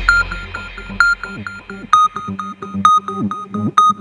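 Progressive trance synth arpeggio: short plucked synthesizer notes repeating about four a second, with a louder note roughly once a second and no kick drum. A deep bass tail fades away in the first two seconds.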